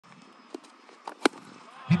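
A cricket bat hitting a tennis ball: one sharp crack a little past a second in, after a couple of fainter knocks.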